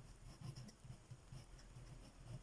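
Faint, irregular scratching of a pencil writing a word on a paper worksheet.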